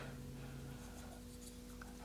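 Quiet room tone with faint rubbing of fingers handling a small plastic model part, over a steady low electrical hum.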